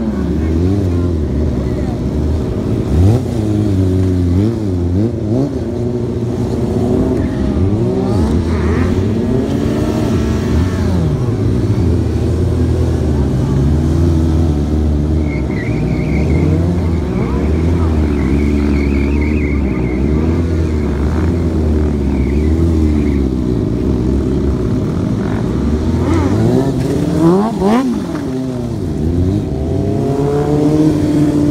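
Sport motorcycle engines revving up and down over and over, each rev a rising and falling whine over a steady low engine drone. A sharp, high rev comes near the end.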